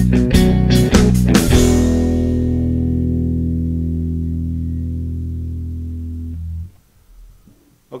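Fender Precision electric bass playing a quarter-note blues bass line in E along with a guitar-and-drums rhythm track. After about a second and a half the band ends on a held final chord that fades slowly for about five seconds and then cuts off.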